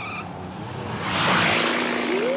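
Cartoon sound effect of vehicle engines droning and growing louder, joined about a second in by a loud rushing, wind-like noise.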